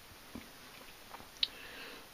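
Faint background noise with a few soft clicks and one short high tick about one and a half seconds in.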